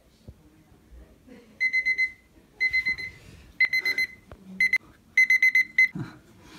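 Small digital timer beeping at a high pitch in quick bursts of several beeps, about one burst a second. The beeping is cut off near the end as its button is pressed.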